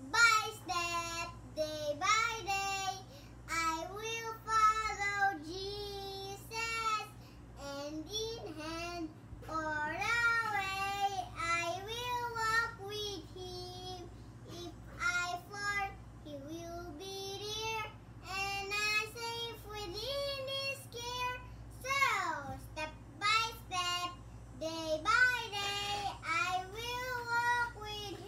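A young boy singing unaccompanied, in a child's high voice, with a sliding falling note about three quarters of the way through.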